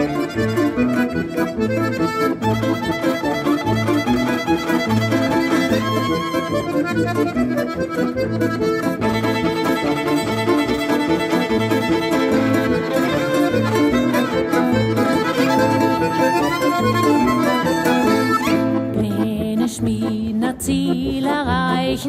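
Instrumental folk-pop passage: a violin plays the melody over a Styrian button accordion (Steirische Harmonika), with a steady bass beat underneath.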